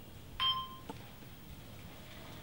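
Digital slate on a tablet marking the take: a sharp clap with a short electronic beep, then a lighter click about half a second later.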